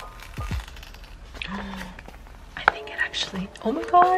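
Paper crinkling with small sharp clicks as fingers pick at and lift the corner of a machine-cut sticker sheet to check that the cut went through. Soft background music fades at the start, and a voice begins near the end.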